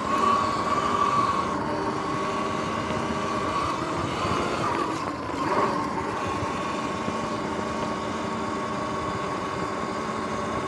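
Sur-Ron electric dirt bike cruising on pavement: a steady high electric-motor and drivetrain whine over wind and tyre rush. Its pitch wavers briefly about halfway through, then settles again.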